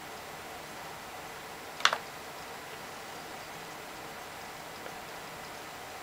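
A single short click from a netbook's touchpad button, about two seconds in, over a faint steady hiss.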